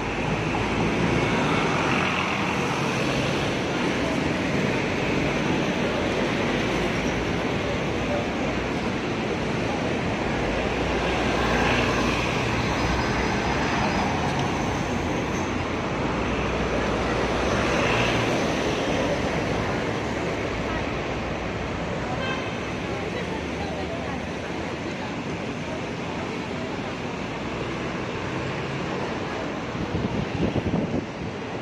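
Busy city street traffic at a crossing: a steady wash of road noise and engine hum from buses and cars driving past close by, swelling a few times as large vehicles go by.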